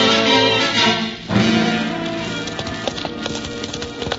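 Radio-drama bridge music breaks off about a second in and gives way to a held chord that fades, as the sound effect of horses' hoofbeats at a gallop comes in.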